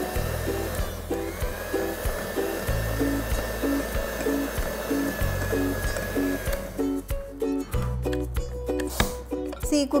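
Electric hand mixer beating ragi cookie dough in a glass bowl, running with a steady whine until it stops about six and a half seconds in; a few sharp clicks follow. Background music with a steady beat plays throughout.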